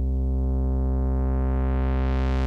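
Ableton Wavetable's sub oscillator holding one steady low synth note while its Tone control is raised, so the pure sine grows steadily brighter and buzzier as more harmonics come in.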